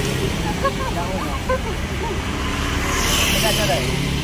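Steady road traffic noise, with people laughing and chatting in short bursts over it.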